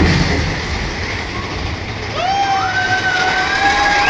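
Steady rumbling noise of a theme-park dark ride's fire-effect scene. About halfway through, a musical note glides up and holds, and another rising note comes in near the end.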